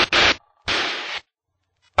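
Cockpit noise heard through the aircraft intercom in two short hissing bursts, cut in and out by the intercom's voice gate, with a few sharp clicks near the start. After the second burst, about a second in, the line goes dead.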